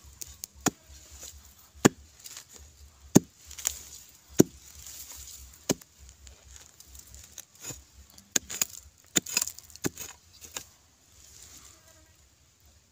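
A metal digging blade chopping into hard, dry soil to dig out a wild yam tuber. There are five sharp strikes about a second and a quarter apart, then a quicker run of strikes between about eight and ten and a half seconds in.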